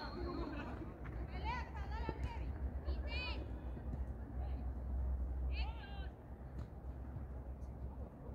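Distant high-pitched shouts from players on the pitch, three short calls a couple of seconds apart, over a steady low rumble.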